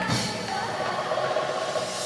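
Ensemble music with drums, a hit at the start, then held, wavering melodic tones.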